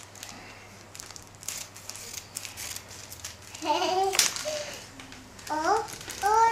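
Scissors cutting into a plastic balloon packet, with soft scattered snips and crinkles. A child's short vocal sounds come in about halfway through and again near the end.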